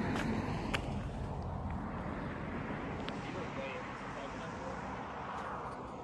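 Steady outdoor background noise with no single source standing out, such as wind and distant ambience on a phone microphone, with a couple of faint clicks.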